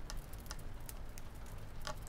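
A few faint, sharp clicks, about three, over a steady low background hum.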